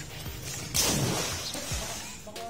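A person jumping into a swimming pool: one loud splash about three-quarters of a second in, dying away over about half a second, over background music.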